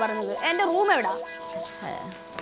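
A woman speaks briefly, then about a second in a held chord of steady tones from background music takes over.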